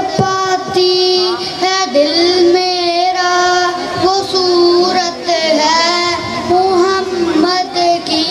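A boy singing a naat, an Urdu devotional poem, solo into a microphone in a high child's voice, holding long wavering notes with short breaks between phrases.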